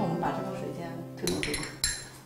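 A few sharp clinks of tasting spoons against porcelain tea cups in the second half, with a high ringing after each, over background music that fades out about halfway through.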